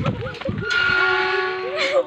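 A horn sounds one steady, held note for a little over a second, starting abruptly just under a second in. Voices talk before it and over its end.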